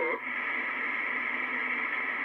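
Swan 700CX HF transceiver on receive: steady hiss of band noise from its speaker while the main tuning dial is turned, after a received voice cuts off right at the start.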